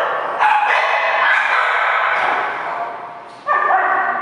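Dogs barking in a tiled room, each bark ringing on in the echo: a run of loud barks in the first two seconds that slowly fades, then another bark about three and a half seconds in.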